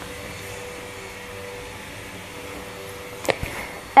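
Steady mechanical whirring in the background with a faint steady hum, the annoying background noise of the room. A single sharp click comes a little after three seconds in.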